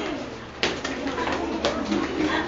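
Classroom bustle of children's voices, with two sharp knocks about a second apart, like desks or chairs being moved.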